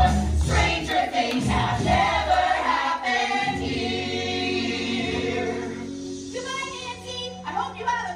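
Cast of a live stage musical singing together over a backing track. About three seconds in the beat drops out and a long chord is held for several seconds.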